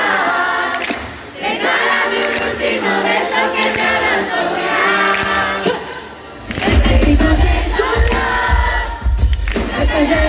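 Concert crowd singing along with a pop song played through the PA. About six and a half seconds in, a heavy bass beat comes in under the music.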